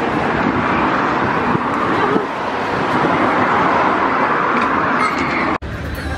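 Steady street noise, mostly road traffic, heard while walking along a pavement; it cuts off abruptly near the end.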